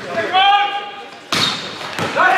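A volleyball being struck with one sharp smack in a large, echoing sports hall, a little past halfway, with a player's short shout just before it.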